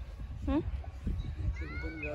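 Voices: a short questioning "hmm?" about half a second in, then a high, gliding, pitched cry near the end, over a steady low rumble of wind on the microphone.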